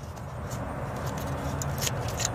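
Faint plastic clicks and handling noises from an electrical connector being worked loose on a throttle body, over a steady low hum.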